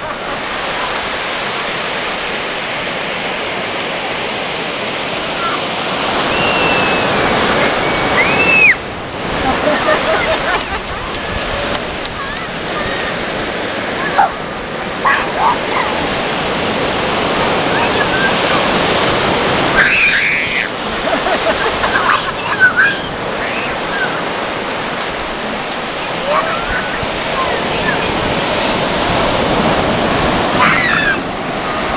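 Sea surf breaking and washing up a sandy beach: a steady rush of waves.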